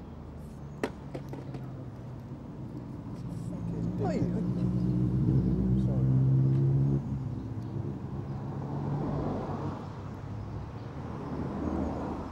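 A motor vehicle's engine running with a steady hum in outdoor street ambience. It builds about three seconds in, is loudest a little past halfway, and then drops off abruptly to a weaker hum. A single sharp click comes near the start.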